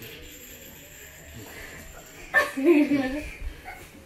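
A child's short wordless vocal cry about two and a half seconds in, over a faint steady hum.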